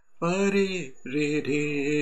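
A man singing a short phrase of a Hindi film melody unaccompanied, in a low voice: a few short notes held at steady pitch with brief breaks between them.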